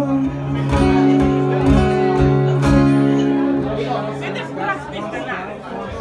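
Two acoustic guitars strumming the last chords of a song, which ring out and fade about three and a half seconds in, followed by people talking and chattering.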